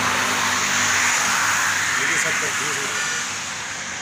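Steady noise of road traffic passing on a highway, easing slightly toward the end.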